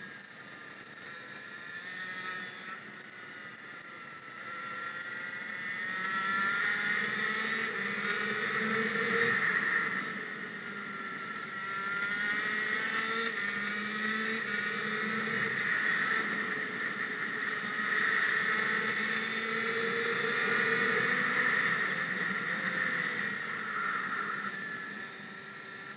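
Racing kart engine heard from the driver's helmet, its revs rising and falling with the lap. It is quieter and lower through the corner at first, then climbs in pitch and loudness on the straights, with short dips about ten seconds in and again a few seconds later as the driver lifts for bends.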